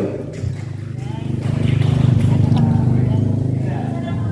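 A motor engine running steadily, growing louder about a second in and then holding a low, even hum.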